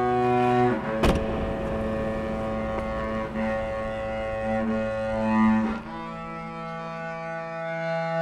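Film score music: sustained low string-like notes held as a drone chord, which moves to new notes about a second in and again near six seconds. A single sharp click sounds about a second in.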